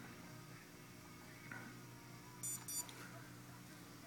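Quiet room tone with a faint steady hum, broken about two and a half seconds in by two short, high-pitched electronic beeps in quick succession.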